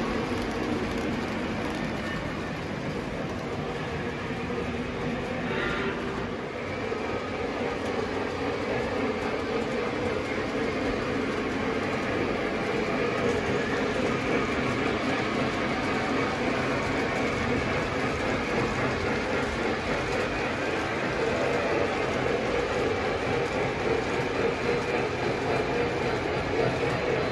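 Lionel O gauge model trains running: a steady rumble and clatter of wheels on the track, a little louder in the second half as more trains pass.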